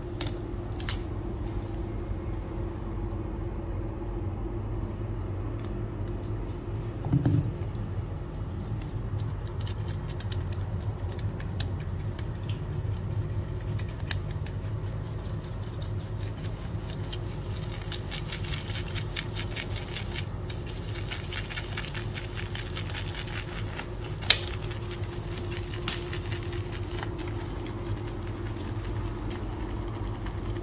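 Shaving brush whipping shaving foam in a small stainless steel bowl: a fast, fine crackling and ticking as the bristles swirl the lather against the metal, thickest in the middle stretch. A steady low hum lies underneath, with a dull thump early on and one sharp click about two-thirds of the way through.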